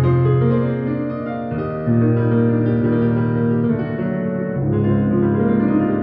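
Sampled Bösendorfer Imperial grand piano voice of a Yamaha B2 SC2 silent piano, heard through a powered speaker fed from the piano's headphone socket: slow, held chords, with a new bass note struck about two seconds in and again past four and a half seconds.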